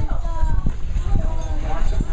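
Several people talking in casual conversation, the words indistinct, over a steady low rumble with a few brief knocks.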